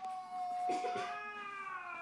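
A drawn-out pitched cry: one steady, held note, then a second higher call that bends up and then down.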